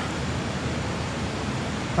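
Steady background hiss with no distinct sound event in it.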